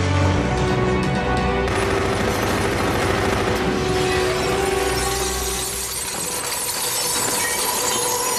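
Film soundtrack: music over gunfire, with bullets striking metal equipment and a glass window shattering.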